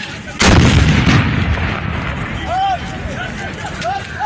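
Improvised explosive device detonating by the road: one sudden loud blast about half a second in, its low rumble dying away over a second or two. Raised voices follow.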